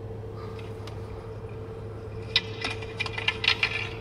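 A skateboard clacking and slapping on pavement several times in quick succession, heard through a phone's speaker over a steady low hum, in the second half.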